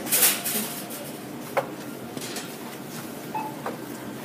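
A short burst of rustling handling noise, then a single sharp click about a second and a half in, over steady background noise.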